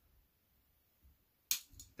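Hinge release firing on a dowel-and-string draw-string trainer: one sharp click about one and a half seconds in, after near silence, with a fainter tick just after it.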